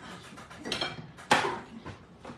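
A plastic spatula clacking against a nonstick electric skillet and being set down: a few light knocks and one sharp, loud clack a little past the middle.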